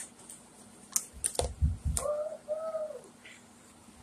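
Plastic toy dolls handled right against the microphone: a few sharp clicks and a low bump about a second in, then a brief two-part hummed vocal sound.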